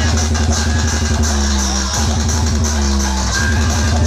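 Electronic dance music played very loud through a DJ sound-box rig, with heavy steady bass. A rapid beat runs for about the first second, then it gives way to held bass notes.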